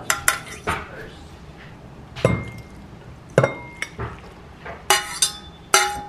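A stainless-steel saucepan and a metal fork clink against a ceramic bowl as instant ramen is tipped out of the pan and served. There are about seven sharp clinks at uneven intervals, some ringing briefly.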